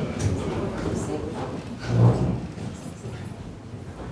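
A roomful of people getting to their feet: chairs scraping and knocking, shuffling and low murmuring, with a heavy thump about two seconds in.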